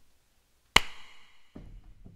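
A single sharp knock about three-quarters of a second in, followed by a brief ring.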